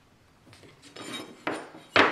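Metal speed square being picked up and set back down on a plywood sheet, with a few light metallic clicks and knocks; the sharpest comes about one and a half seconds in.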